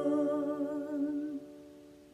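Closing music: a held keyboard chord dying away under a woman's voice humming with vibrato, which fades out a little past halfway.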